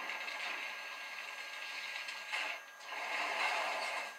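Cartoon crash and cracking sound effect: a long, rattling, crumbling noise of wreckage coming down, broken by a short lull about two and a half seconds in, played through a television speaker.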